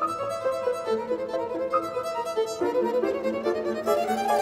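Violin playing a quick passage of short, rapidly changing notes over piano accompaniment.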